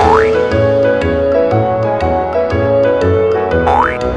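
Bouncy background music with two quick rising cartoon 'boing' sound effects, one at the start and one near the end, marking the flicks of a sleeping cat's ear.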